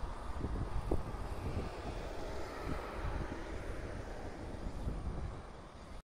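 Wind buffeting the microphone over a steady low outdoor rumble, with a faint hum swelling slightly around the middle.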